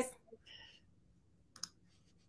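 The last word of speech ends at the start, then near quiet with one short, sharp computer click about one and a half seconds in.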